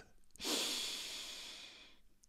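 A man's single long in-breath, close to the microphone, starting about half a second in and fading away.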